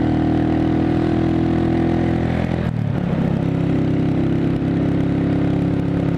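Motorcycle engine running steadily under way, heard from the rider's helmet, with road and wind noise. Just under three seconds in the engine note drops to a lower steady pitch, as with an upshift.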